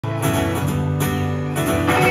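Live band playing an instrumental intro led by guitars, with strummed acoustic guitar and electric guitar over a steady backing. No vocals yet.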